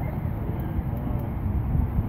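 Steady low rumble of road traffic crossing the Golden Gate Bridge.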